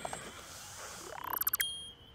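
Cartoon breathalyzer test sound effect: a steady breathy hiss of blowing into the device, then a quick rising run of clicks ending in a short high electronic beep near the end.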